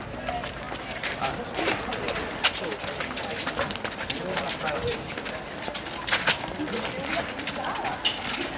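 Footsteps and shoe scuffs of a group jogging on stone paving, with scattered short, sharp steps and faint background chatter.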